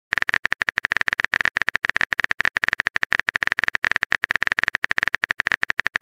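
Phone keyboard typing sound effect: a fast, steady run of short clicks, more than a dozen a second, as a message is typed out.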